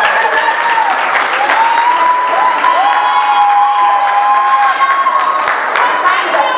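Audience applauding and cheering, with a few long, wavering high-pitched cries held over the clapping.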